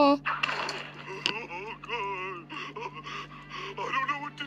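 Wordless cartoon voice sounds: a breathy gasp early on, then fainter, wavering, whimper-like vocalising over a steady low hum.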